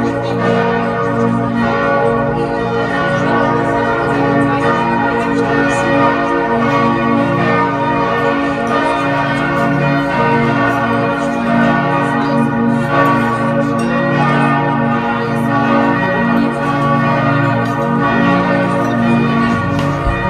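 Church bells of Speyer Cathedral, several bells ringing together in a steady, continuous peal.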